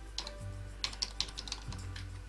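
Computer keyboard being typed on: a run of separate key clicks as a word is entered.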